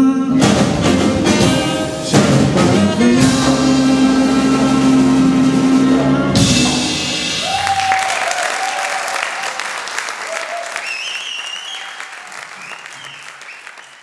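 A jazz large ensemble with horns, strings, piano and drums playing its closing chords, the music breaking off about seven seconds in. Audience applause with whistles and cheers follows, fading away near the end.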